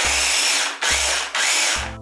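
Ninja Master Prep blender pulsed in three short bursts, its motor and blades whirring through frozen banana chunks and milk. Each burst stops abruptly, the last one near the end.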